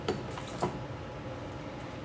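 A few faint clicks and knocks from things being handled, over low room background.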